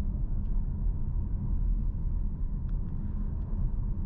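Steady low rumble of road and tyre noise inside the cabin of a Hyundai Tucson plug-in hybrid SUV while it is driven, with a few faint ticks.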